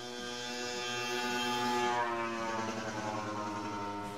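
Motor scooter going by at high revs. Its engine note swells, then drops in pitch about two seconds in as it passes, and fades away.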